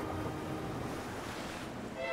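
Sea waves and wind, an even rushing wash that swells about a second in, while the last notes of soft music fade out at the start.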